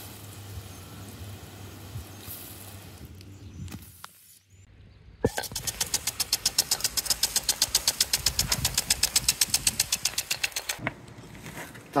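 Pop-up lawn sprinklers spraying water: a steady hiss for about four seconds, then after a short drop a louder spray with a rapid, regular pulsing of about seven beats a second that cuts off abruptly about a second before the end.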